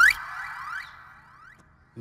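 A synthesized comedy sound effect: a rising pitch sweep peaks sharply at the start, then a ringing tone fades out over about a second and a half.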